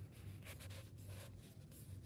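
Near silence: a faint steady low hum with a few faint soft noises.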